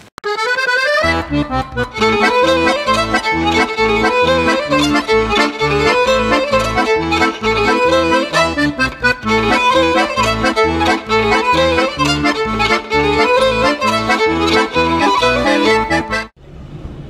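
Accordion music playing a folk tune over a steady pulsing bass beat. It comes in fully about a second in.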